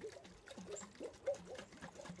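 Soil-and-water mixture sloshing in a lidded glass mason jar shaken by hand, a run of short gurgles and faint knocks as the soil is stirred into an even suspension.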